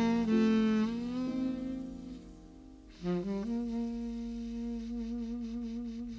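Slow jazz ballad: a single horn plays the melody over a bass line, with a brief soft lull about halfway, then one long held note with vibrato.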